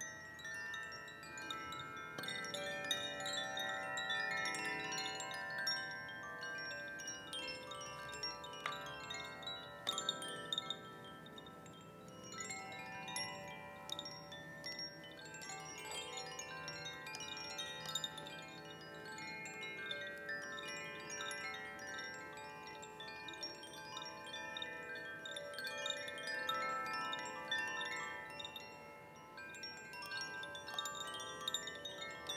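Two hand-held cylindrical chimes, one in each hand, kept moving so that they ring without a break. Many tones overlap, and the shimmer swells and fades.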